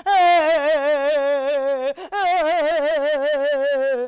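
A woman's voice mimicking a tiger crying: two long, loud wailing cries, each about two seconds, their pitch wavering throughout, with a brief break between them halfway through.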